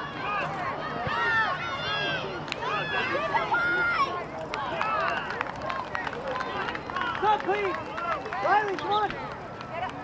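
Several voices talking and calling out over one another, none of them clear enough to follow.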